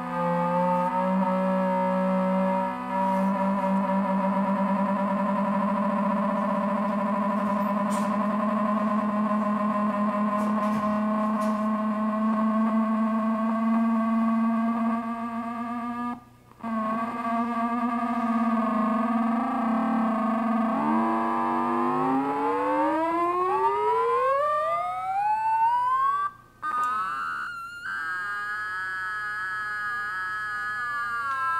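Small synthesizer built from hex Schmitt trigger logic circuits making square-wave tones: it holds a droning chord of several pitches. About two-thirds of the way in the pitches glide steeply upward and settle into a higher held chord. The sound cuts out briefly twice.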